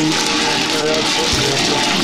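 Tap water running over aquarium gravel as it is rinsed by hand, with music and a voice playing over it.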